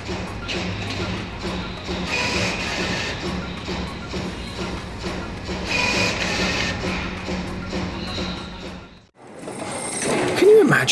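Automatic product-arranging machine on a conveyor line clicking rapidly as it sets items into rows, a fast irregular clatter that sounds like typing on a keyboard. It cuts off suddenly about nine seconds in.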